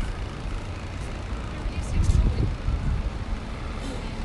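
City background sound: a steady low rumble with faint voices of passers-by and a few soft ticks.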